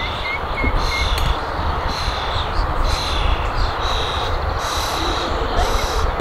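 Outdoor background noise: a steady low rumble under a rhythmic high hiss that pulses about once or twice a second. Three short chirps come in the first second.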